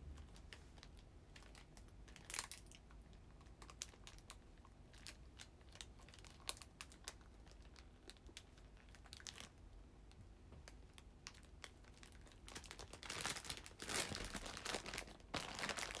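Plastic bread wrapper crinkling as it is handled, in scattered crackles with a denser, louder stretch of crinkling near the end.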